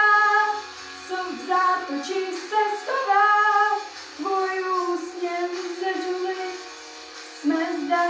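A young teenage girl singing solo in a pop style, holding long notes across several phrases. There is a short break about seven seconds in before she starts a loud new phrase.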